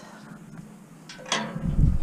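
Tubular steel field gate being handled and swung open: quiet at first, then a metallic clank with a short ring a little past halfway, followed by low rumbling.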